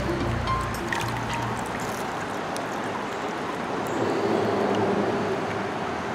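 Background music whose notes die away over the first second and a half, then the steady rush of a shallow creek's flowing water.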